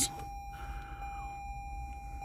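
Steady single-pitched electronic tone from the 2018 Toyota Highlander's key-in-ignition reminder, sounding continuously with the key inserted.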